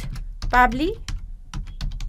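Typing on a computer keyboard: a quick, steady run of key clicks, about five or six a second, as text is entered.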